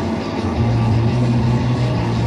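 Live rock band holding a loud, steady drone of sustained notes, with a low bass note coming in about half a second in.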